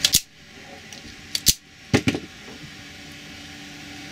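Heat-shrink tubing being snipped into short pieces with cutters: a sharp snip at the start, then two more close together about a second and a half in.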